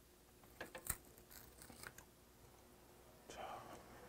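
Faint clicks of chopsticks picking up food and wrapping a steamed pumpkin-leaf ssam, the sharpest click about a second in, followed by a short soft burst a little after three seconds.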